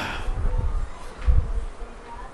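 Low thuds and rumble of handling noise on the microphone, with two soft bumps about half a second and a second and a half in, as the lecturer moves and handles his open book on the desk.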